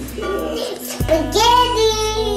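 Soft music with a young child's high voice: about a second in, the voice rises into a drawn-out sung note that is held and then slides down.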